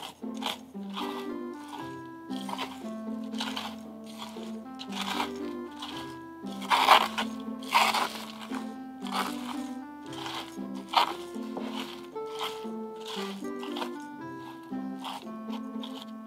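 Background music with a simple melody, over the irregular gritty crunching and scraping of a plastic spoon stirring a dry potting-soil mix of akadama granules and compost in a bowl. The crunches come several a second, a few of them louder about seven and eight seconds in.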